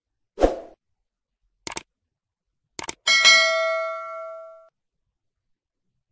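A short soft thump, two quick double clicks, then a bell-like ding that rings out for about a second and a half, over dead silence, typical of added editing sound effects rather than a blender running.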